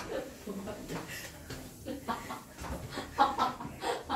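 Indistinct students' voices in a classroom, short broken bursts of chatter and cackling laughter.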